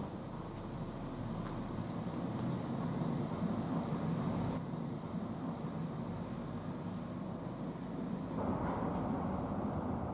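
Street ambience: a steady low rumble of road traffic, with faint high chirps above it. The background shifts abruptly about halfway through and again near the end.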